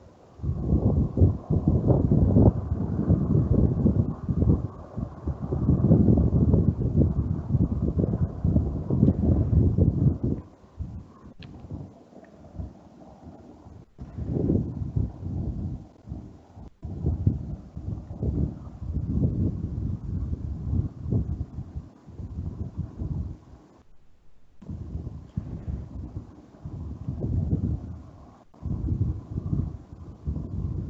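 Low rumbling noise on a microphone, coming in uneven surges and loudest for the first ten seconds, with a brief dropout near the end.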